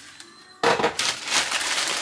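Groceries and their bags being rummaged through by hand: a loud crackly rustle that starts suddenly about half a second in and goes on, irregular and full of small crackles.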